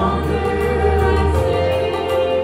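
A small group of singers, women and a man, singing a gospel worship song into microphones, holding long notes over a steady low accompaniment.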